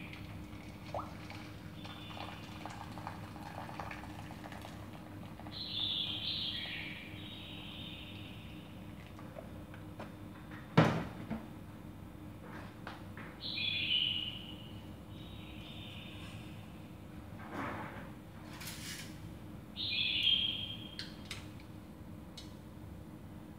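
Hot water poured from an electric kettle into a steel can in a metal basin, a faint trickle at the start. A sharp metal knock comes about eleven seconds in. A short call falling in pitch sounds three times, at roughly even spacing.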